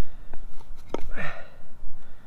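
Small saw on the spine of a bushcraft knife cutting the ember notch into a wooden bow-drill fireboard in short rasping strokes, with a sharp tick about a second in.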